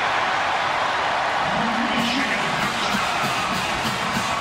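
Large stadium crowd cheering a home-team touchdown: a dense, steady roar of many voices.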